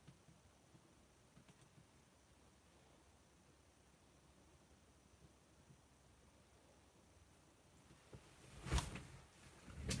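Near silence: faint room tone, broken near the end by one short, sharp knock.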